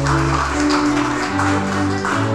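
Audience applauding, starting at once and dying away near the end, over music with long held string notes.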